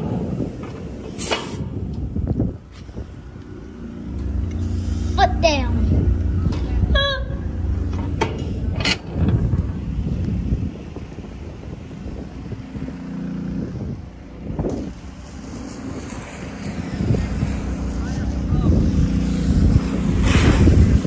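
Old water truck's engine running steadily while its fire hose sprays water, with a few sharp knocks and clanks in the first seconds and short bits of voices.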